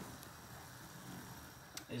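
Faint bubbling of a pan of water and chopped fruit at a rolling boil on the stove, with a light tap near the end.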